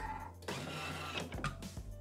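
Thermomix TM6 food processor giving a short mechanical whir for about a second and a half over soft background music, as the machine works on or finishes the batter.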